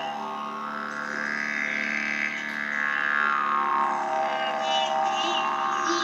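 Sitar and a brass horn playing together: a sustained drone under a long note that bends slowly up and then back down, with a few plucked sitar notes near the end.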